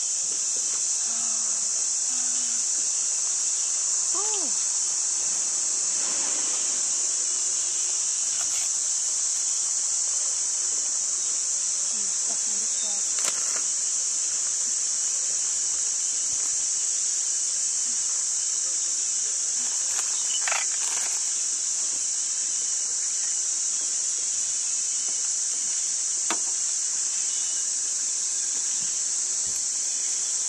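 A dense insect chorus in forest: a steady, high-pitched buzzing drone.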